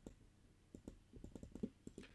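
Faint computer mouse clicks: a single click at the start, then a quick, irregular run of clicks in the second half.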